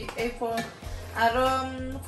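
A woman's voice over background music, with one long held vowel in the second half.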